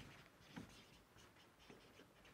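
Faint scratching strokes of a marker pen on a whiteboard as words are written.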